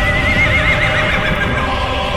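A horse whinnies once, a quavering call that falls slightly in pitch and lasts about a second and a half, over steady soundtrack music.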